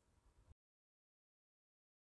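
Near silence: a faint hiss that cuts off to total silence about half a second in.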